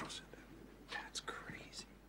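A man whispering a few quiet words.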